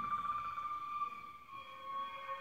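Film score music: a high note held steady, wavering briefly at the start, with lower sustained notes joining about one and a half seconds in.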